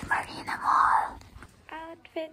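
A woman whispering a few words.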